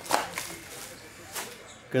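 A few light knocks and taps from handling cardboard trading-card boxes on a tabletop, the first the loudest, about a second apart.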